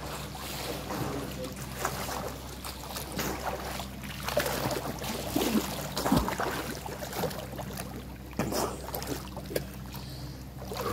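Pool water splashing from a swimmer's strokes and kicks, irregular and getting louder as the swimmer comes close, loudest about halfway through. A steady low hum runs underneath.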